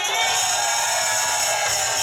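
Live acoustic band music with maracas and a hand-held frame drum shaking over a long held note, with audience whoops mixed in.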